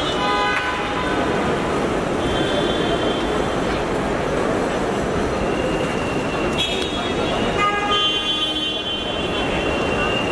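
Road traffic noise with car horns honking several times: a short honk at the start, another about seven seconds in, and a longer one near the end, over background voices.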